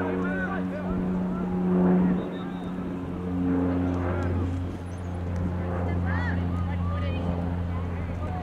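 A steady low mechanical drone with several even tones, swelling and easing slightly in level, under distant voices calling out.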